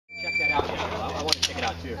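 A short, high electronic beep right at the start, the shot timer's start signal for a practical pistol stage, followed by people talking and a couple of sharp clicks.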